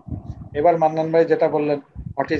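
A person's voice with long, held vowel sounds, starting about half a second in after a brief pause and stopping just before the end.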